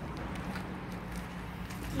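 A few light footsteps of a child in flip-flops on a concrete sidewalk, over a faint, steady low hum.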